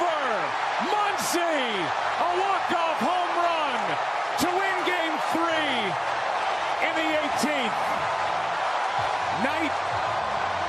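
Packed baseball stadium crowd roaring in celebration of a walk-off home run, with individual fans whooping and yelling over the din. A few sharp cracks cut through, about one, four and seven seconds in.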